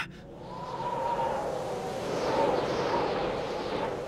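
A rushing soundtrack sound effect with a faint held tone, swelling over about two seconds and then easing off.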